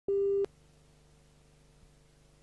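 A short, loud electronic beep: one steady tone that starts and cuts off sharply after about a third of a second. It is followed by a faint steady hum with hiss from the tape playback.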